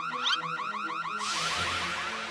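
An electronic alarm warbling in fast rising chirps, several a second, over background music; a little over a second in it gives way to the hiss of a fire extinguisher spraying.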